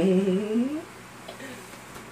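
A short hummed 'mm-hmm' from a voice, lasting under a second, its pitch rising at the end.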